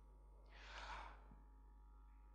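Near silence, broken by one soft breath or sigh into a handheld microphone about half a second in.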